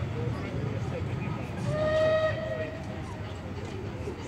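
Steam whistle of the departing Merchant Navy class locomotive 35028 Clan Line, one long note of just under a second about two seconds in, sagging slightly in pitch as it closes. Under it runs the low rumble of the train pulling away.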